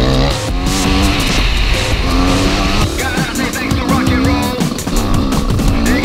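Enduro motorcycle engine revving up and down under way, mixed with background music with a steady beat.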